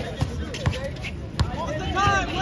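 A basketball being dribbled on an outdoor asphalt court: three sharp bounces, roughly half a second apart.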